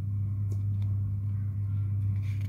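A steady low hum runs throughout, with a couple of faint clicks about half a second and a second in.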